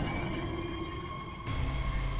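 Ominous anime soundtrack drone: a deep, steady rumble under several held tones, growing louder about one and a half seconds in.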